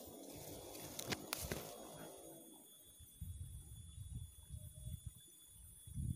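Quiet outdoor ambience: a faint hiss, two light clicks a little over a second in, then scattered faint low rumbles.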